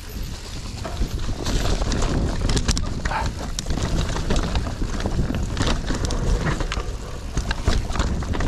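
Mountain bike descending a loose dirt trail: a steady low rumble of tyres over the ground, with a dense run of clicks, knocks and rattles from the bike over bumps, louder from about a second in.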